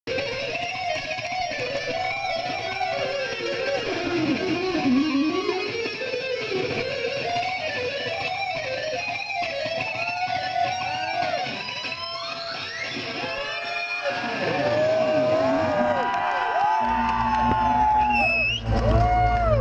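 Electric guitar played live through an amplifier: a lead line full of bending, sliding notes, with quick rising sweeps about twelve to fourteen seconds in. A deep low note comes in about a second before the end.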